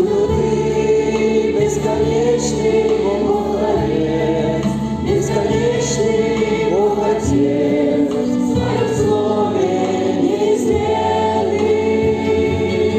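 A congregation singing a hymn together in slow, held notes over a steady low accompaniment.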